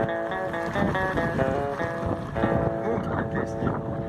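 Quiet talk with steady, sustained musical tones underneath, and a low street rumble.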